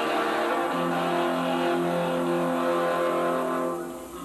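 Amateur rock band playing live, loud: a held chord rings on steadily, then drops in level near the end.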